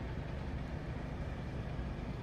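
Steady low rumble of outdoor city background noise, like distant traffic, with no separate events standing out.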